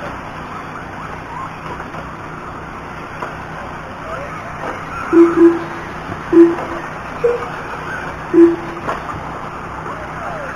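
Electric RC short-course trucks whining as they race, with a steady background of track noise. From about five seconds in come five short, loud beeps, one of them higher than the others, typical of a lap-timing system registering cars as they cross the line.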